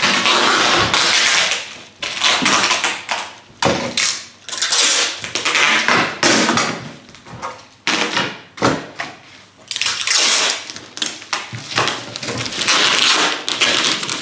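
Bubble wrap being folded and pressed by hand, crinkling and rustling in loud irregular bursts every second or two.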